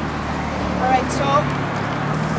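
A steady low engine hum in the background, with a brief voice about a second in.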